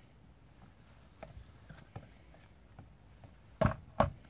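Faint, scattered small clicks as the chain tensioner screw on a Stihl MS361 chainsaw is turned clockwise to take up chain slack, with one brief, much louder sound near the end.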